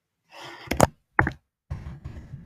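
Computer keyboard keys struck hard enough to knock: three sharp knocks, two in quick succession around the middle and a third a moment later.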